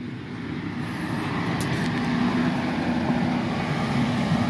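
Kubota diesel tractor engine running as the tractor approaches, growing steadily louder, with a steady hum settling in about halfway through.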